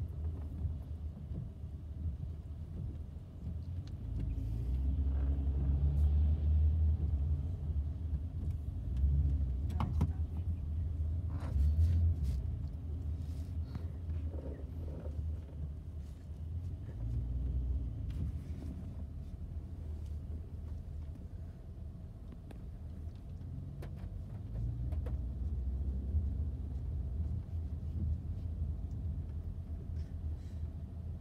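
Car cabin noise from a moving car: a low engine and tyre rumble that swells about four seconds in and eases off past the middle, with a few faint clicks.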